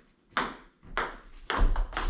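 Table tennis ball clicking on paddles and the tabletop as it is hit back and forth: several sharp clicks, coming faster near the end.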